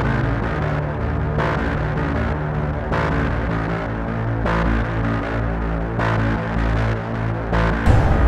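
Dark, suspenseful background music: a low droning hum with a soft swelling pulse about every second and a half.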